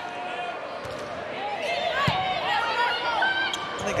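Sneakers squeaking on a hardwood volleyball court in a run of short chirps, with one sharp hit of the ball about halfway through.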